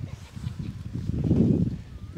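Wind buffeting the microphone: a low rumble that swells about a second in and eases off near the end.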